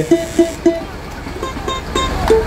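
Live samba rehearsal music: three short pitched notes about a third of a second apart, followed by a few soft clicks.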